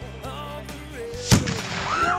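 A lit explosive on the ground going off with a single loud bang about a second and a quarter in, followed by a short ringing tail.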